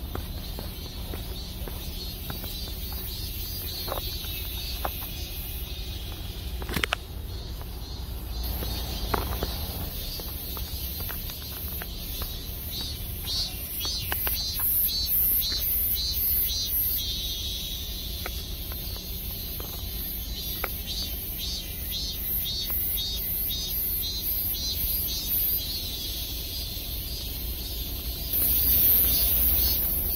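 Outdoor background: a steady low rumble throughout, with runs of rapid high-pitched chirping pulses from about halfway in and a few sharp clicks.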